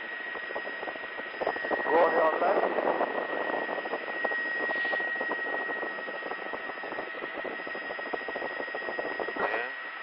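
Aircraft cabin noise heard through a crew intercom: a steady hiss with a constant high whine, and faint muffled voices in the background.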